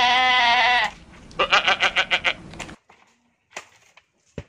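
A goat bleating: one long wavering bleat, then a shorter stuttering bleat of several quick pulses. A couple of faint knocks near the end.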